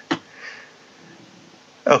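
A short click, then a soft sniff through the nose, followed by quiet room tone.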